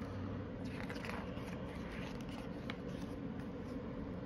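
Faint crinkling and rustling of glossy holographic sticker sheets as a sticker-book page is turned and pressed flat, with a few small crackles around the first second and near the end.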